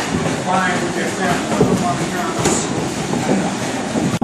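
Boxing gloves landing on focus mitts in a rough rhythm, over steady room noise and indistinct voices.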